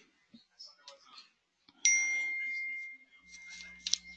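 A single electronic ding from the computer: a clear, bell-like tone that starts sharply about two seconds in and fades away over about a second. Two quick clicks follow near the end.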